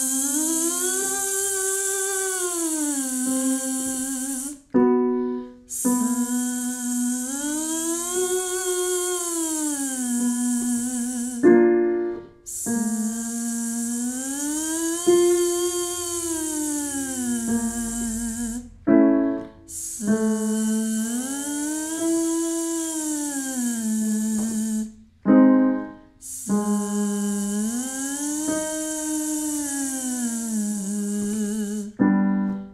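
A woman singing a voiced 'zzz' siren warm-up: a buzzing z held on a note, then gliding up and back down in an arch, five times, each start a little lower than the last. A short digital-piano chord sounds before each new siren.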